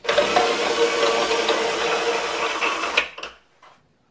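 Wooden toothed ratchet wheel of a home-made screw test press spinning fast, its pawl clattering quickly over the teeth. The clatter stops abruptly about three seconds in.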